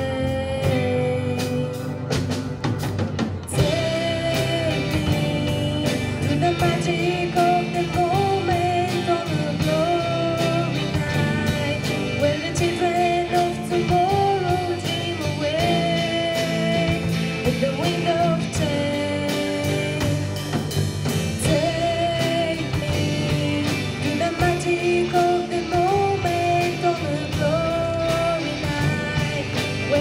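Rock band playing live: a female lead vocal over electric guitars, bass guitar, keyboard and drum kit. After a sparser opening few seconds, the full band comes in with a loud hit about three and a half seconds in and plays on.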